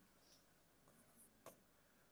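Near silence with faint scratching and one short tap about one and a half seconds in: a stylus writing a number on an interactive display board.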